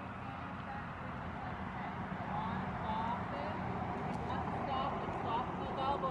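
Faint, indistinct voices over steady outdoor background noise.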